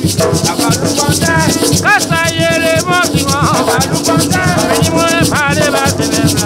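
Gwoka music: ka drums struck by hand in a dense, driving rhythm, with a shaker rattling throughout and a voice singing over them.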